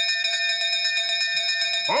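Small brass bell on a post, rung rapidly over and over by hand. It gives a bright, steady ringing of quick strokes, about ten a second, as a call for the boat.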